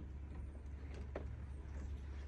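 A car door being opened: a couple of faint clicks about a second in over a low, steady rumble.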